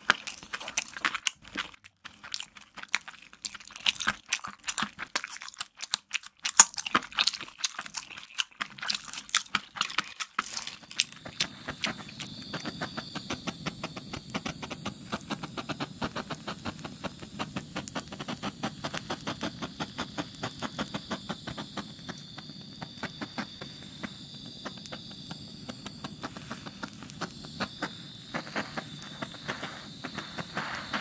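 Crunching and chewing of hard candy for about the first ten seconds. Then a handheld butane torch flame runs steadily with a hiss and fast crackling as it is played over the tray of candy.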